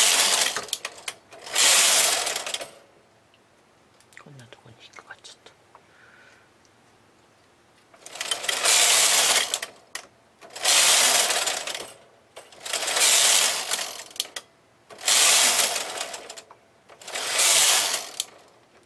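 Brother KH970 knitting machine's lace carriage pushed back and forth along the metal needle bed to transfer stitches for a lace pattern. Each pass is a rasping mechanical clatter of about a second and a half: one pass ends just after the start and another follows, then comes a pause of about five seconds with only faint clicks, then five passes about two seconds apart.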